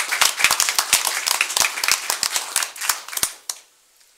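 Applause from a small group of people clapping, thinning out and stopping about three and a half seconds in.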